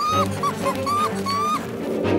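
Background score with five short, high yelping calls in quick succession, each bending slightly in pitch.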